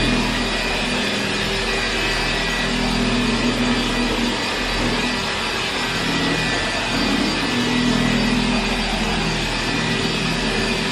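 Corded dual-action paint polisher with a foam pad running steadily against a car's paint, a loud whirring drone. Its tone rises and dips slightly as the pad is worked across the panel.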